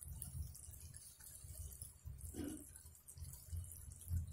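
Faint crackle of thick curry gravy simmering in a nonstick pan, over a steady low hum.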